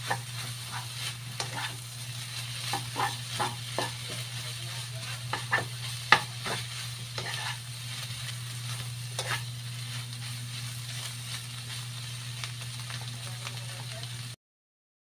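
Sliced bitter gourd and egg sizzling in a granite-coated wok while a spatula stirs and scrapes it in quick strokes, with one sharp knock of the spatula on the pan about six seconds in. The stirring stops about two thirds of the way through, leaving the sizzle over a steady low hum.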